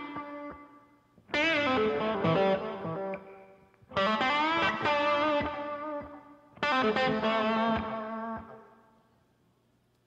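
Solo electric guitar with an added effect on its tone, playing three phrases with bent notes. Each phrase is struck loud and left to ring and fade, and the last dies away about a second before the end.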